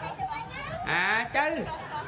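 Speech only: a high-pitched voice talking in short phrases, loudest about a second in.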